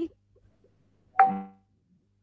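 A single short electronic chime a little over a second in, starting suddenly and ringing away within half a second, after the last word of speech at the very start.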